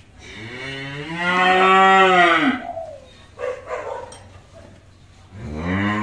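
A young calf mooing: one long call of about two seconds that steps up in pitch, holds, then drops away. A second call starts near the end.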